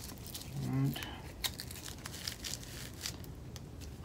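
Hook-and-loop (Velcro) backing of bronze abrasive pads crackling as the pads are pressed and fitted onto a brush's fins: an irregular scatter of short, sharp crackles and small rips.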